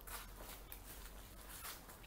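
Quiet ambience with a few faint, soft footsteps on stone steps.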